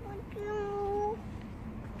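A toddler's high voice: a brief sound, then one held, nearly level vocal call lasting under a second.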